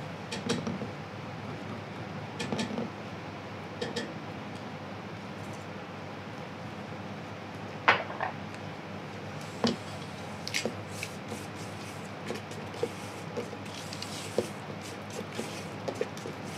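Spatula scraping and tapping against a stainless steel mixing bowl and a stand-mixer whisk: scattered light knocks and clicks, the sharpest about eight seconds in and again near ten seconds, over a steady background hum.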